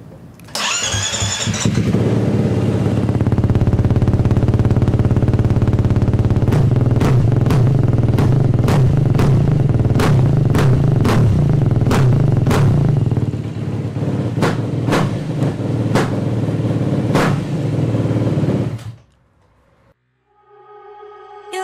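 Enduro motorcycle exhaust with an FMF silencer that has its dB killer removed. The bike is started about half a second in and runs loudly, then is revved in a series of short, sharp blips through the second half, and is switched off about a second before the end.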